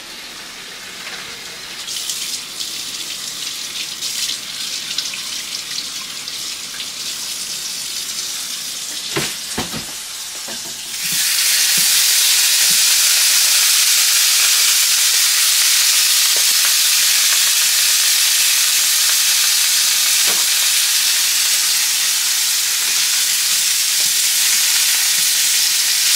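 Pre-cooked sausage patties frying in a small pan of hot butter and oil. The first stretch is quieter, with light clicks and a couple of low knocks. About eleven seconds in, a loud, steady sizzle starts abruptly as the patties hit the hot fat and carries on.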